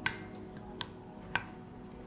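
Three light clicks as butternut squash slices are laid into an oiled All-Clad D3 stainless-steel fry pan, with faint background music underneath.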